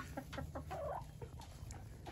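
Backyard chickens clucking quietly, a few soft short clucks mostly in the first second.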